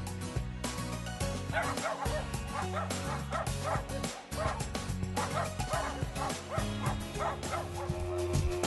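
Miniature schnauzer barking repeatedly, about two short barks a second starting a second or so in, over background music.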